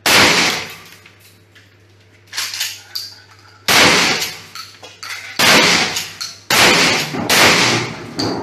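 Shotgun fired about four times in a row, each shot a sharp blast with an echoing tail. A quieter clatter comes between the first two shots.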